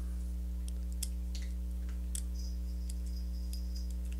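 Faint, scattered light clicks of small metal hardware as nylon-insert lock nuts are handled and threaded by hand onto pulley bolts in an acrylic plate, over a steady low hum.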